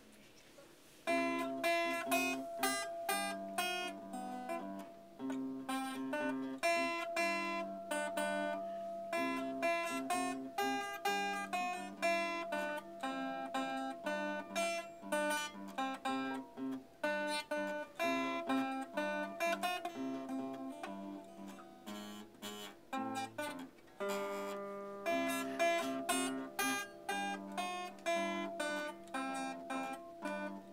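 Two acoustic guitars playing a duet, one picking a melody and the other a bass line beneath it. The playing starts about a second in and runs on.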